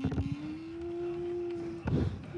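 A voice making a steady, slightly rising engine-like hum for a toy school bus being pushed along a wooden floor, with short knocks at the start and near the end.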